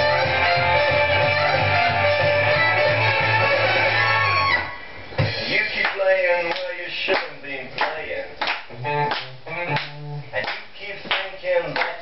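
Recorded band music with a steady bass line plays and cuts off abruptly about four and a half seconds in. After it come sparse plucked guitar notes, with voices.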